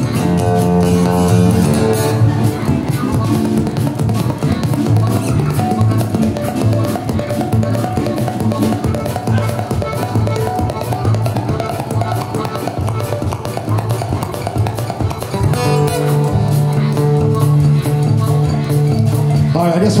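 Live acoustic band playing: strummed acoustic guitar, upright bass and drums, with harmonica over them. Long held notes come in during the first couple of seconds and again for the last few seconds.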